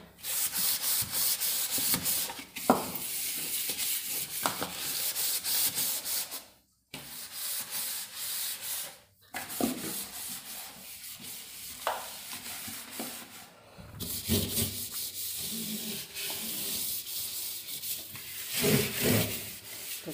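A cloth rubbing the plastic walls and shelves inside a refrigerator in quick back-and-forth wiping strokes, stopping briefly twice.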